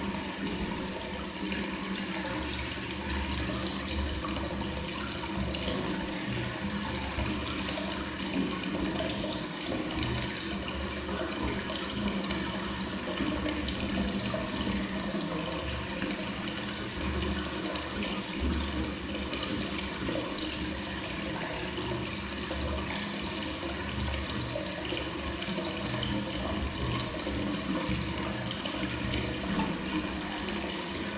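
Hot-spring water pouring steadily from a wooden spout into a full tiled bath, splashing on the surface of the pool.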